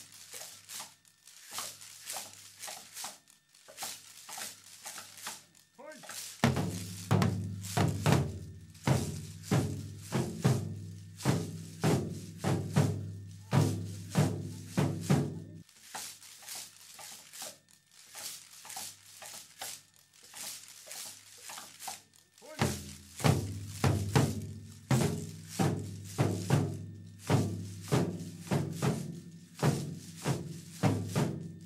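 Binzasara, fan-shaped wooden slat clappers, clacking in a steady rhythm as dengaku accompaniment. Waist-worn drums join with regular beats about six seconds in, pause around the middle, and come back about two-thirds of the way through.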